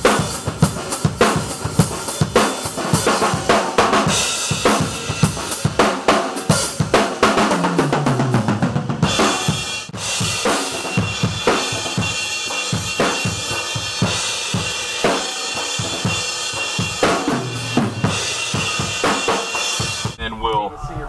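Drum kit played continuously in a rock groove, a late-60s Rogers Holiday kit with a Gretsch Bell Brass snare: dense kick and snare hits with cymbals, and the cymbals ring more steadily through the second half.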